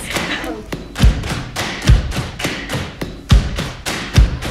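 A rapid clatter of taps and knocks, about five or six a second, with a few heavy low thumps spread through it.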